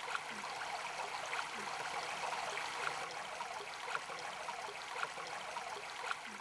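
Steady running water, like a small stream, with faint gurgles and drips scattered through it.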